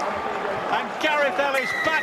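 Man's commentary over stadium crowd noise, then a referee's whistle blown in one long steady blast starting near the end, signalling the try is awarded.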